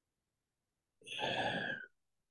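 A man's breathy sigh, lasting just under a second, starting about a second in.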